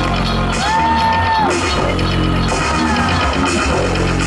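Live electronic music from a band on stage, loud over the PA, with a steady bass and a high line that arches up and back down in pitch about a second in.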